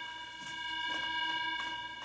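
A school bell sounding as one steady, sustained electronic tone made of several pitches held together: a weird-sounding bell, meant to be soothing rather than jangly and harsh.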